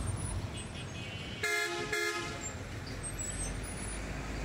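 A vehicle horn honks twice in quick succession about a second and a half in, over the steady low rumble of road traffic and engines.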